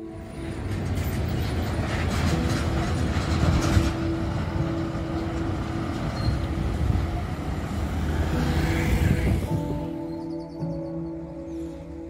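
Road traffic passing on a highway: a steady noise of engines and tyres with a low rumble, one vehicle swelling past near the end, over soft background music. The traffic noise fades out about ten seconds in, leaving only the music.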